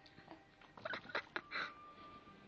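A baby's short squeals and grunts, a quick run of them about a second in, while he is being spoon-fed.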